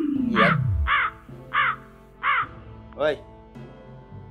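Comedy sound effect of a crow cawing, five harsh caws about half a second apart over light background music. During the first second a falling tone slides down in pitch and fades out, marking an awkward silence.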